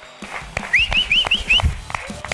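A quick run of five short whistle-like chirps, each rising in pitch, about five a second, over a few soft knocks.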